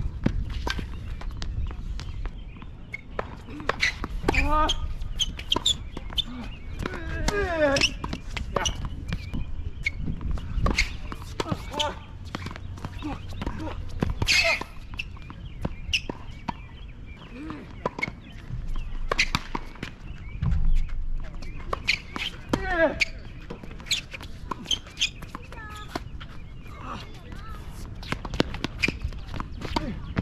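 Tennis on an outdoor hard court: scattered sharp knocks of racket strikes, ball bounces and footsteps, with voices in the background.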